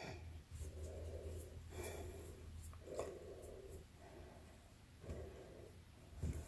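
Faint, soft rubbing of fingers and thread scraps on a wooden tabletop as the threads are twisted together, in short strokes about once a second, over a low steady hum.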